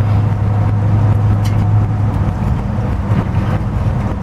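Swapped-in Gen III Hemi V8 of a 1928 Dodge rat rod, heard from inside the cab while cruising: a steady low engine drone at an even speed.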